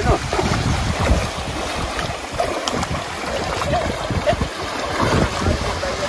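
Legs wading and splashing through shallow, flowing river water, with wind buffeting the microphone in a steady low rumble.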